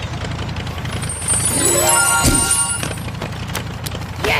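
Electronic dance track in an instrumental passage with a steady bass line. About a second and a half in, a rising stack of synth tones sweeps up and breaks off.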